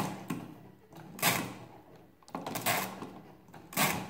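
Main crank of a 1920s Rapid pinwheel calculator turned three times with stiff, quick strokes, each turn a short mechanical rattle of the pinwheel and accumulator gearing, about a second and a quarter apart.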